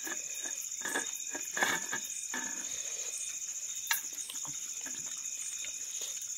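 Fingers mixing rice and curry on a steel plate, making scattered soft clicks and scrapes against the metal, with a sharper click about a second in and another near the middle. A steady high-pitched drone runs underneath.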